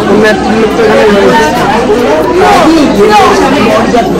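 Speech only: people talking and chatting close by, with other voices behind.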